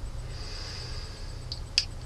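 A person sniffing a glass of beer held at the nose: one long drawn-in sniff, then two short sharp sniffs near the end, over a steady low hum.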